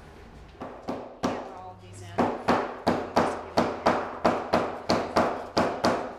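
A quick run of sharp strikes as canvas is fastened onto a large wooden stretcher frame. A few spaced strikes come first, then a steady run of about three a second starts about two seconds in.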